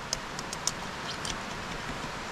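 Steady outdoor background hiss with a few small, sharp clicks and light rustles from tools being handled at a dig in leaf litter.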